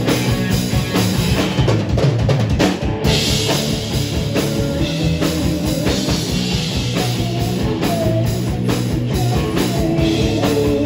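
Live rock band playing, with a drum kit and electric guitars. The sound grows brighter about three seconds in and stays full and loud throughout.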